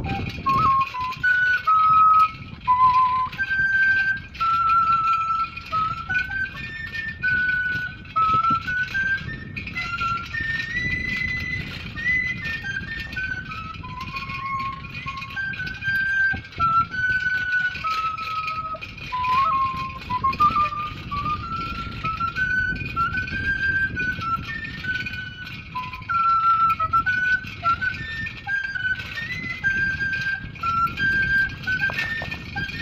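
Quena (Andean notched end-blown flute) playing a solo melody, one clear note at a time stepping up and down through a middle-high range, over a low steady rumble.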